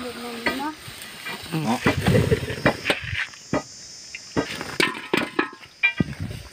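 Hands rummaging through a large aluminium basin of leaves, giving a run of short rustles and clicks, with a voice heard briefly at the start.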